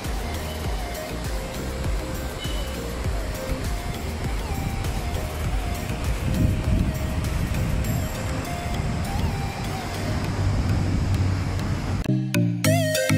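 Soft background music over a steady rushing noise, with heavier low rumbling around the middle and near the end.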